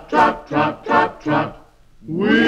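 An unaccompanied chorus chanting short 'trot' syllables in an even rhythm, about two and a half a second, four times, imitating horses trotting, then falling quiet briefly.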